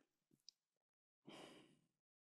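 Near silence, with a man's single faint breath out at the microphone about a second and a half in.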